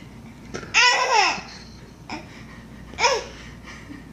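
A baby laughing in two bursts: a long, loud one about a second in and a shorter one at about three seconds.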